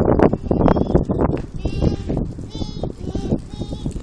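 Young children's high-pitched, wavering squeals, a few short ones in the second half, with wind buffeting the microphone in the first second or so.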